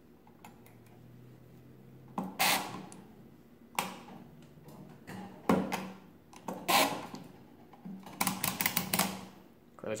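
Hand-cranked 1920s Rapid Calculator pinwheel calculator being worked: several separate bursts of mechanical clacks and ratcheting clicks, then a longer run of quick clicks near the end. This is the register set to all nines being cleared, now clearing properly after its accumulator-clearing repair.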